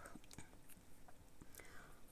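Near silence: room tone with a few faint soft clicks, such as light handling of the toys and their plastic packaging.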